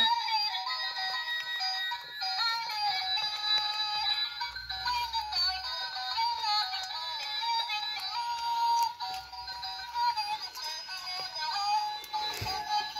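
A light-up toy mermaid doll playing its built-in song through its small speaker: a thin, high-pitched electronic melody with a synthetic sung voice, running without pause.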